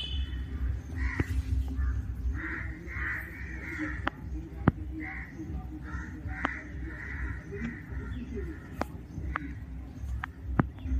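Alexandrine parakeet giving a string of short, harsh, raspy chattering calls, with a few sharp clicks in between.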